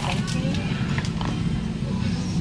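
Steady low hum of store background noise, with a faint voice just after the start.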